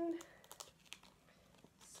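Faint handling sounds of a cut-out mitten and bear figure being pushed together: a few light clicks and rustles spread over about a second and a half.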